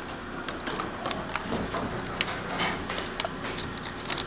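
A large, crisp fortune cookie being cracked and broken apart by hand: a run of small, irregular cracks and crackles.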